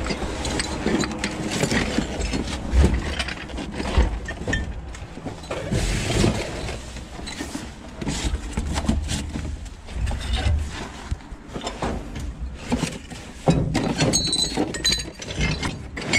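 Cardboard boxes and plastic wrap rustling and crunching as boxes of ceramic dishes are lifted, shifted and stepped on, with irregular knocks and occasional clinks of the ceramic cups and plates, a few of them close together near the end.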